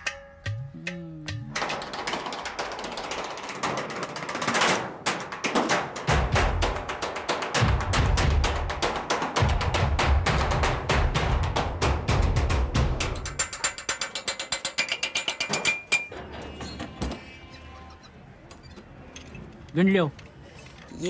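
Fast drumming with sticks on scrap metal and junk, a dense run of sharp strikes, with a low beat joining in the middle. It thins out near the end.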